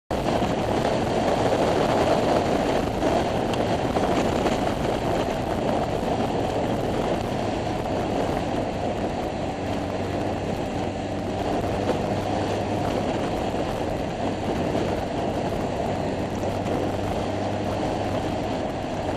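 Wind rushing over the microphone of a camera on a moving motorbike, with the bike's engine running steadily underneath.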